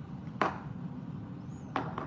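Two sharp clicks about a second and a half apart as small glass nail-polish bottles are set down on a hard desk, over a steady low hum.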